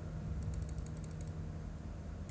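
A quick run of about ten light computer-mouse clicks, starting about half a second in and over within a second, over a steady low hum.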